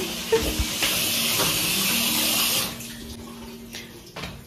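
Tap water running, shut off about two-thirds of the way through; a low steady hum carries on underneath.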